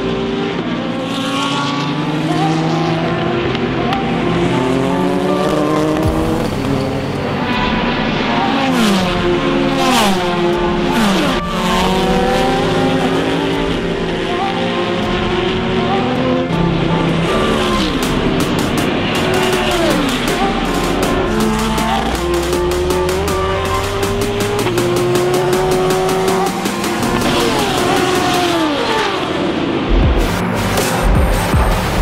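Endurance race cars passing at speed one after another, each engine note dropping in pitch as it goes by.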